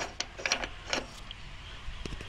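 A few short, sharp clicks, about three in the first second, over a low background.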